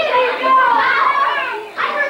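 Children talking and calling out as they play.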